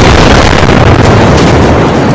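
Burning truck at a fuel station exploding: the blast hits a moment before and carries on as a loud, unbroken roar of the fireball, near the top of the recording's range.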